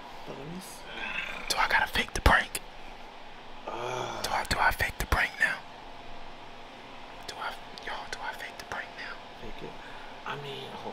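Hushed, whispered talk between two people in two short stretches, the first about a second in and the second about four seconds in, with a few sharp clicks among the words.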